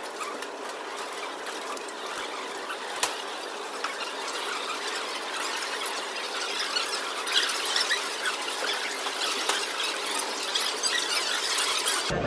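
Chalk writing on blackboards: quick scratching, tapping and squeaks from two people writing at once, over a steady hiss, getting busier toward the end.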